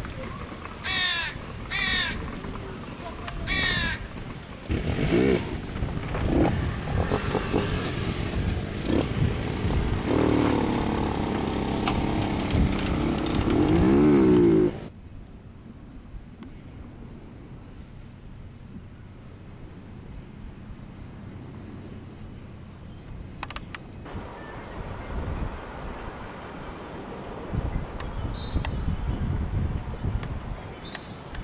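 A bird's harsh calls, about five in the first four seconds. A louder mixed stretch with voices follows and cuts off suddenly about fifteen seconds in, leaving quiet outdoor background with a faint steady high tone that stops about twenty-four seconds in.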